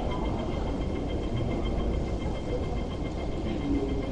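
Steady low rumble and hum of a West Rail Line train standing at the platform behind closed screen doors, with two faint, evenly pulsing high tones over the top.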